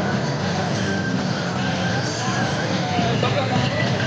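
Loud, steady street-rally din: many overlapping crowd voices mixed with vehicle engine noise, with short scattered calls or tones rising above it.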